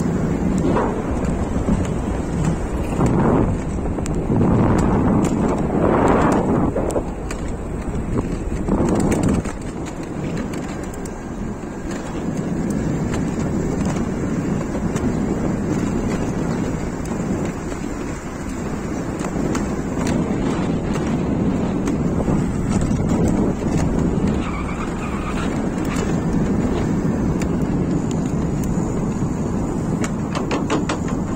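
Steady rush of wind on the microphone and tyre noise from an electric bike being ridden, with several louder gusts in the first part.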